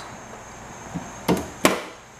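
Glass mason jars knocking as they are handled and set down on a fridge shelf: a faint tap about a second in, then two sharp knocks in quick succession.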